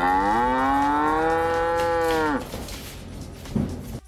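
One long cow moo, about two and a half seconds, rising in pitch at the start and sagging as it ends. A short knock follows near the end.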